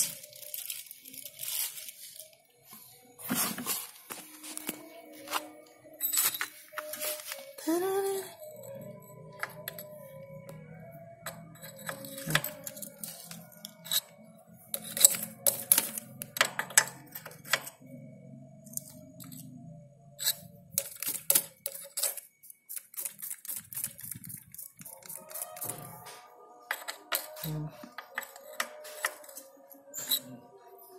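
Irregular metal clicks and clinks from a wrench, the chain adjuster and the drive chain as the chain tension is set on a Yamaha Jupiter Z1 motorcycle. Music plays faintly in the background.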